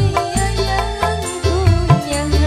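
Live dangdut band music: hand drums beating under a stepping bass line with a wavering melody line on top.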